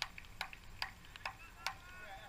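A steady run of sharp clicks or knocks, about two and a half a second, with faint distant voices.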